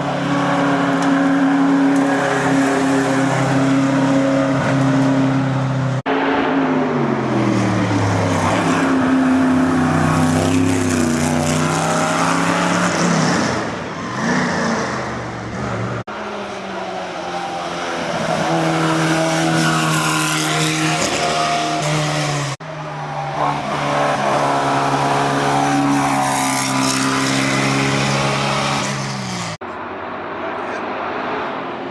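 Hillclimb race cars driven hard up a course one after another, engine notes holding, then dropping and climbing again as they change gear through the corner. The sound breaks off abruptly several times between passes.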